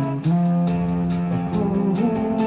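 Doom metal band playing live with no vocals: heavily distorted electric guitars and bass hold slow, sustained chords, changing chord after a brief break about a quarter second in, over steady cymbal hits from the drum kit.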